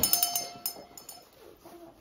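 A small decorative Christmas bell is shaken and rings with a few quick strikes. The bright ringing fades out within about a second.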